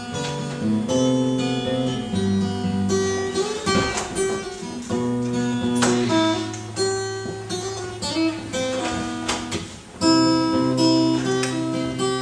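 Solo acoustic guitar, strummed and picked, with chords ringing and changing every second or two. A strong strum comes about ten seconds in.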